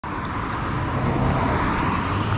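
Motorcycle engine idling with a steady low hum.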